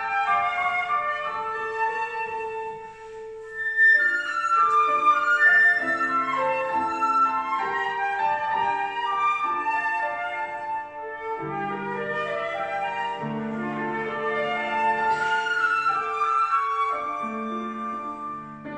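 Flute and grand piano playing a classical duet: the flute carries a melody of held notes over piano chords, with a brief lull about three seconds in.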